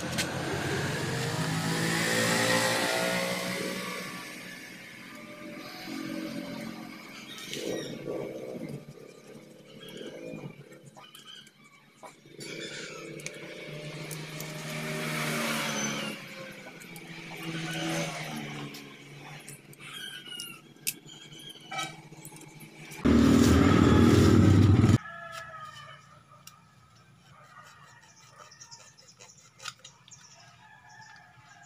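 Motor vehicle engines passing by, their pitch rising and falling, loudest in the first few seconds and again about halfway through. A little past three-quarters of the way in, a very loud sound starts and stops abruptly after about two seconds.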